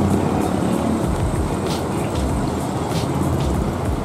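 Steady low rumble of idling bus engines.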